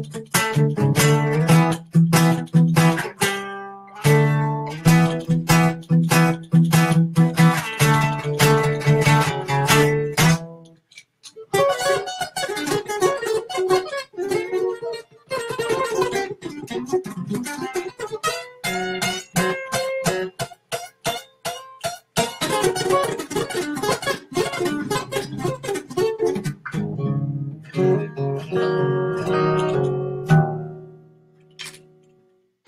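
Acoustic guitar played fast with a pick: rapid single-note runs over a repeated low note, a brief break about ten seconds in, then more quick runs and phrases.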